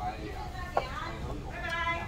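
Restaurant dining-room background of voices and murmur, with a short click about a second in and a brief high-pitched voice near the end.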